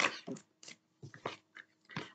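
A deck of oracle cards being shuffled by hand with difficulty: a few short, separate snaps and rustles of the cards with brief gaps between them.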